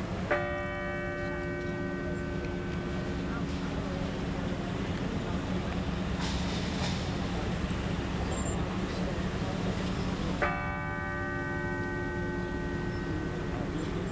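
A large cathedral bell struck twice, about ten seconds apart, each stroke ringing on and fading slowly: a slow funeral toll. Crowd murmur and a low steady hum run underneath.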